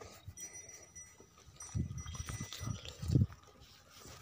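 A cow gives several short, low grunts from about halfway through, the loudest near the end.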